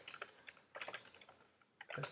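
Computer keyboard typing: an uneven run of faint key clicks that thins out in the last half second.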